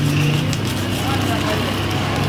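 Voices talking in the background over a steady low hum, with a knife sawing through the aluminium-foil wrapping of a burger.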